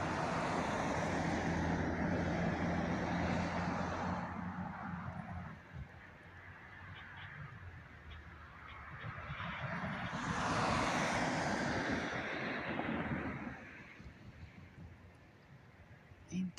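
Two road vehicles passing close by one after another: a car with a low engine hum and tyre noise over the first four seconds, then a second rush of tyre noise that swells and fades about ten to thirteen seconds in.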